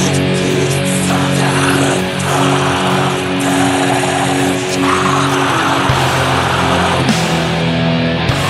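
Blackened drone doom metal: heavily distorted electric guitar holding long, slow, sustained chords, with a noisy distorted wash that swells and fades every second or two.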